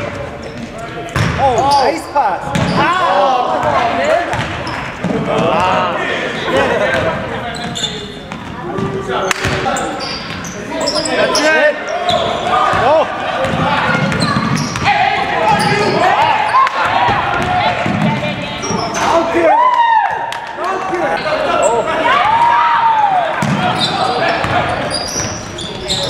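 A basketball being dribbled on a hardwood gym court, with the voices of players and spectators talking and calling out all through.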